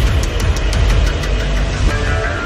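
Film soundtrack music over a heavy low mechanical rumble, with a few sharp clicks right at the start.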